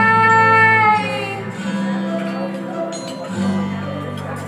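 A female vocalist holds a long sung note over backing music, and the note ends about a second in. The backing music carries on with guitar strumming for the rest of the time.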